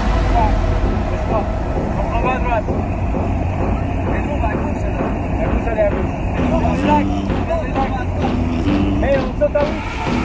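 Steady low drone of a skydiving jump plane's engine and propeller heard inside the cabin, with people's voices over it.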